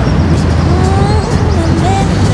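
Steady low rumble of a motor yacht's engine running under way, with water and wind noise over it.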